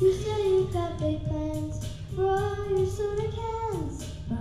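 A group of children singing a melody in unison, holding notes that step up and down, with a downward slide near the end.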